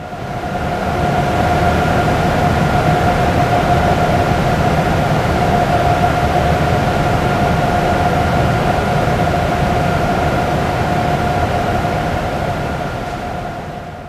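Cooling fans of a Cray XE6/XK7 supercomputer's cabinets running: a steady, loud rushing hum with a constant whine in it. It fades in over about the first second and fades out at the very end.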